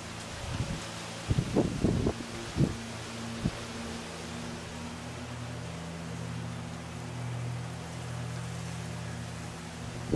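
A steady low motor hum, like an engine running some way off, over a faint outdoor hiss. A few short low thumps come in the first three and a half seconds.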